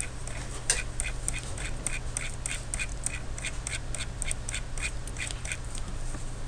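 A steady run of light clicks, about three a second, from computer input used to scroll down a spreadsheet, over a low steady hum.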